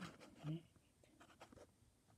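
Faint handling noise: small clicks and light rubbing as plastic toy figures are pushed around on a plastic playset floor, with a brief low voice sound about half a second in.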